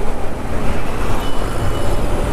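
Motorcycle riding at speed in traffic: a loud, steady rumble of the engine mixed with wind and road noise on the on-bike microphone.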